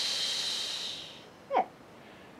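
A long, forceful 'shhh' exhale through the mouth: Pilates breath work that pushes the air out against resistance, as if hushing someone. It fades out a little over a second in.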